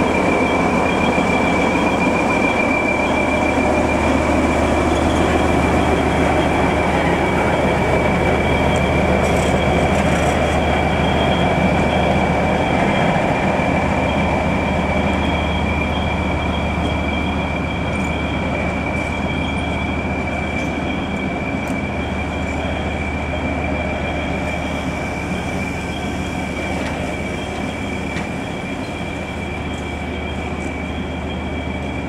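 Diesel locomotive running as it moves slowly away along the tracks: a steady low engine drone with a steady high-pitched whine over it, slowly fading.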